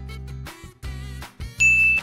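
Light background music with repeated bass notes, then a single bright ding sound effect near the end, the loudest sound here: the chime that marks the quiz answer being revealed.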